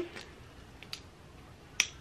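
Small plastic lip-oil bottle being handled: a few faint ticks, then one sharp click near the end as the applicator cap goes back on the bottle.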